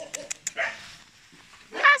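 A dog gives one short, high yelp near the end, its pitch rising and then dropping sharply, after a few soft clicks early on.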